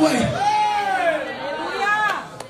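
A man's voice calling out in long, drawn-out exclamations that rise and fall in pitch, with chatter behind it.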